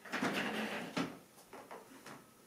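Handling noise from someone moving at the massage couch: a rustle lasting about a second, a sharp click about a second in, and a few softer clicks after.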